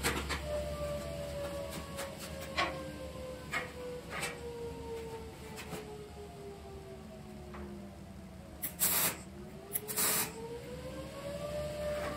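Two short MIG tack welds crackle late on, about a second apart, among a few light metal clinks on the steel box. A faint tone slowly falls and then rises again in the background.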